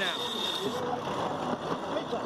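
Onboard sound of a GC32 foiling catamaran sailing at speed: a steady rush of wind and water, with a man's voice at the start.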